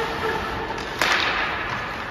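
A single sharp crack of a hockey puck impact about a second in, against the steady hiss of skates and rink noise, ringing on briefly in the arena's echo.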